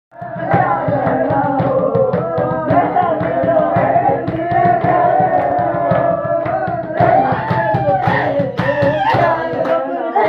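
A Pahari Churahi nati folk song sung by men's voices over a fast, steady beat of drumming and hand claps.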